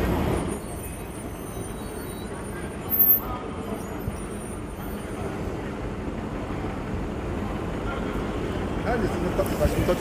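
City street traffic: cars passing on the road with a steady low rumble, louder for the first half second, and a brief louder sound about three seconds in. Faint voices in the background.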